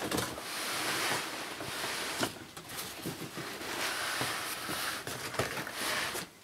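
Clear plastic wrapping and cardboard packaging rustling and crinkling continuously as hands work inside the box, with a few soft knocks.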